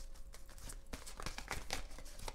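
A deck of tarot cards being shuffled by hand: a quick, irregular run of soft card clicks as the cards slide over one another.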